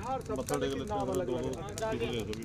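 Men's voices talking over one another, with scattered sharp clicks.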